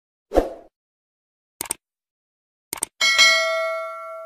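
Subscribe-button animation sound effects: a soft pop about half a second in, two pairs of short clicks, then a bright bell-like notification ding near the end that rings out and fades.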